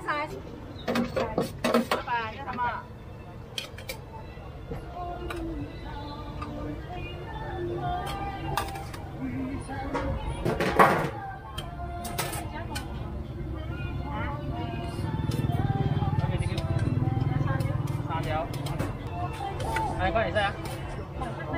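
Market-stall bustle of background voices and music, with scattered clinks of a metal spoon against a steel tray and steel cup as corn kernels are scooped. A low rumble swells in the second half.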